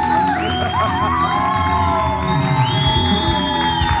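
Live band music with electric and acoustic guitars, and a studio audience cheering and whooping over it.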